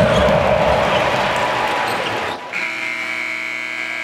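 Arena crowd noise. About two and a half seconds in, the end-of-quarter buzzer horn starts, a steady buzzing tone that holds on.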